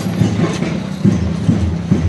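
A steady low beat, about two strikes a second, over a low droning hum.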